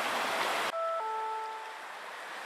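Steady wash of surf on a pebble beach that cuts off abruptly under a second in, leaving a few held tones of background music that fade away.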